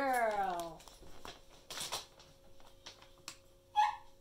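A dog whining once, a short cry that falls in pitch, in the first second. About two seconds in comes a short rush of noise, and near the end a brief squeak.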